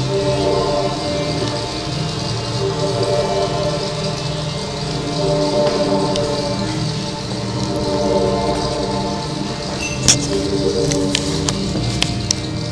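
Ambient music of slow, sustained held tones, with a few sharp clicks about ten seconds in.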